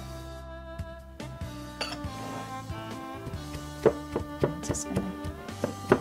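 Background music with steady held notes, over a few sharp knocks of a wooden pestle in a wooden mortar as pounding begins. The loudest knocks come about four seconds in and just before the end.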